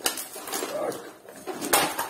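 Scrap metal parts from a dismantled car alternator clinking and clattering as they are handled and set down by hand, with a sharp metallic clank near the end.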